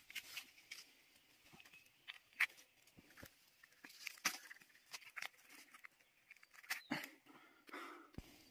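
Shiitake mushrooms being snapped off a log by hand: faint, scattered short snaps and crackles, with the brush of ferns and dry leaves, a few louder snaps about two and a half, four and seven seconds in.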